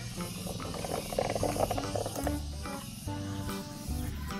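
Coarse sand shifting and rustling as a hand digs through it in a red plastic toy dump truck bed, with background music throughout.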